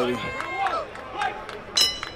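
Mostly speech: a man's voice at the very start, then fainter background voices. A short, sharp high ringing sound comes near the end.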